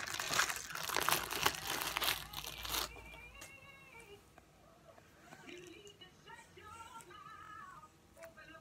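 Plastic zip-top bag crinkling and rustling as slime is pulled out of it, stopping about three seconds in. After that, faint music with a singing voice in the background.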